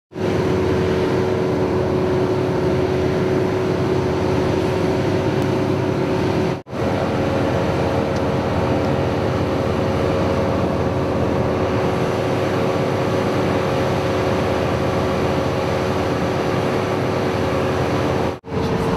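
Stopped ambulance with its engine idling, a steady drone with a constant whine over it. The sound cuts out for a moment about six and a half seconds in and comes back with a slightly different whine.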